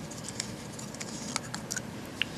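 Small plastic clicks and rubbing as the storage bottle on the tip of a pH probe is loosened and slid off the electrode, a few sharp clicks over a faint steady hiss.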